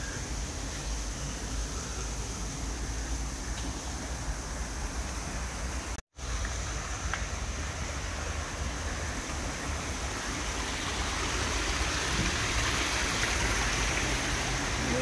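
Steady rush of running water from a garden pond stream and cascade, growing louder toward the end, over a low wind rumble on the microphone. The sound cuts out for an instant about six seconds in.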